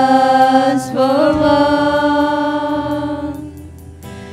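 Small group of female worship singers singing together over bass and acoustic guitar. The voices move to a new note about a second in, hold it, and let it fade out near the end.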